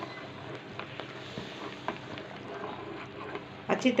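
A spoon stirring hot milk with caramel mix in a metal pan, with a few light clicks of the spoon against the pan.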